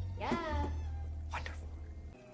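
A drawn-out spoken "yeah" that slides down in pitch, over a low steady drone of background music.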